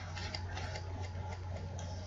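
Stylus writing on a tablet screen: faint light ticks and scratches over a steady low hum.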